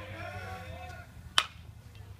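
A baseball bat striking a pitched ball, one sharp crack about a second and a half in, with faint spectator voices before it.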